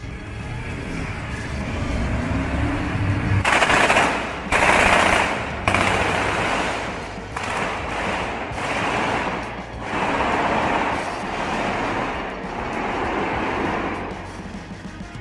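Bursts of rapid gunfire, each lasting about a second and repeating, after a low rumble in the first few seconds.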